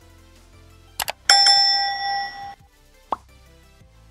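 Subscribe-button animation sound effects over soft background music: a quick double click about a second in, then a bright notification-bell ding that rings out for about a second. A short falling pop follows near the end.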